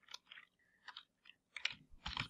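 Faint computer keyboard typing: a handful of soft, irregular key clicks.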